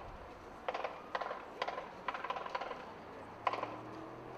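Short clattering knocks and rattles, irregular, about one or two a second: percussion and field equipment being handled and set up.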